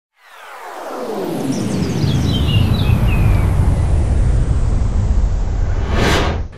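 Cinematic logo-intro sound effect: a deep rumble swells up from silence over about two seconds and stays loud, with falling tones and shimmering high glides descending above it, and a bright rushing sweep near the end.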